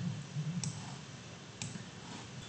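Two computer mouse clicks about a second apart, over faint room tone.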